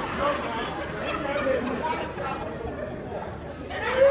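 Audience chatter: several voices talking over one another at once, with no single clear speaker.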